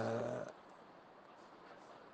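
A man's voice holding one steady, low, hum-like vocal sound for about half a second, then faint room tone.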